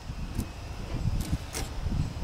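Low, steady outdoor rumble with a few faint ticks.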